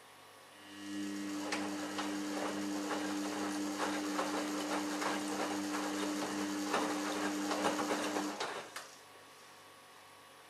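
Samsung Ecobubble WF1804WPU front-loading washing machine tumbling its wash: the drum motor gives a steady hum while the wet laundry and water slosh and drop inside the drum. It starts about half a second in and stops about a second before the end.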